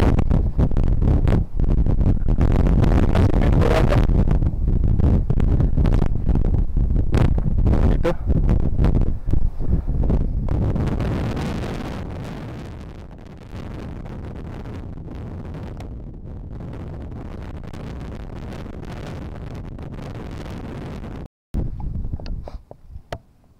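Wind buffeting the camera microphone, loud and gusty at first, then easing to a steadier, quieter rush about halfway through; it cuts off abruptly near the end.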